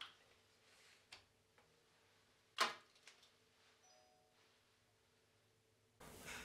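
Near silence, room tone, broken by a faint click about a second in and one sharper click about two and a half seconds in.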